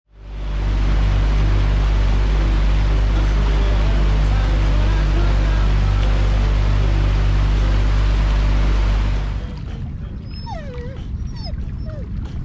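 Mercury outboard motor running at speed with water and wind rushing past the small boat, a loud steady drone that stops abruptly about nine seconds in. In the quieter stretch after it, a dog whines a few times.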